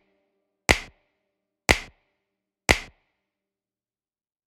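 Three sharp drum-machine hits about one second apart, each dying away quickly, in a sparse break of an electronic background track; the rest is silent.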